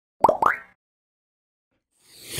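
Logo intro sound effect: two quick blips, each rising in pitch, about a quarter second apart.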